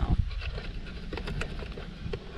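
Light scattered clicks and scrapes as a bluebird nest box is handled and the old nest and dust are cleared out of it, over a steady low wind rumble on the microphone.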